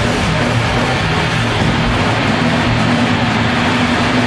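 Death metal band playing live: a loud, dense, unbroken wall of distorted electric guitars, bass and drums, heard through the hall from the crowd.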